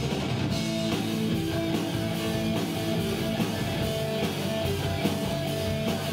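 Live rock band playing: electric guitars holding sustained notes over a steadily pounding drum kit.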